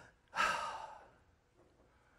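A man sighing: one breathy exhale lasting under a second, fading out.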